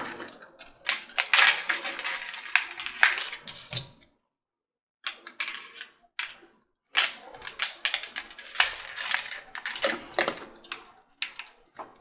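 Plastic back cover of a 3D printing pen being pried at with a tool along its snap-fit seam: a run of irregular sharp plastic clicks and scrapes, with a break of about a second partway through.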